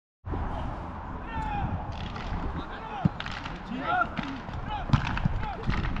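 Several distant voices shouting and calling out across an open football pitch over a low rumble of wind on the microphone, with one sharp thump about three seconds in.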